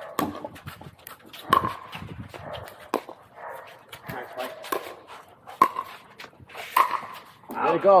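Pickleball rally: paddles striking the hard plastic ball with sharp, short pocks, about five main hits roughly a second apart, among lighter clicks and scuffs. A shout comes near the end.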